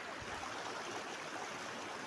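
Steady rush of a small mountain stream running over rocks, with a brief low bump from the phone being swung about a quarter second in.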